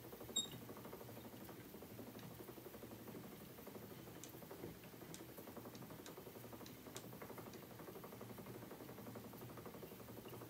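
Wooden spinning wheel running as fibre is spun into yarn: a faint steady whir from the turning flyer and bobbin, with a few small clicks and a brief high chirp about half a second in.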